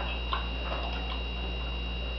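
Soft clicking mouth sounds of someone chewing a piece of chocolate, a few small clicks in the first second, over a steady low hum and a faint high whine.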